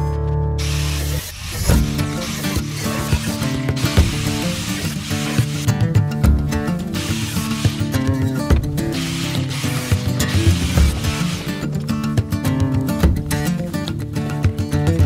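Background music, with the rasp of a jigsaw cutting through a van's sheet-metal roof coming in about half a second in.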